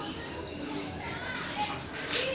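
Faint background voices, short scattered calls and chatter, with no nearby speech.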